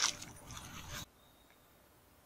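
A short knock followed by faint scraping, like a rail or tool being handled. The sound cuts off abruptly about a second in.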